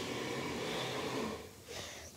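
Kitchen garbage disposal running with a steady whirring noise, then stopping about one and a half seconds in.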